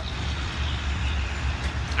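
Steady outdoor background noise: a low rumble with a fainter hiss above it, no single event standing out.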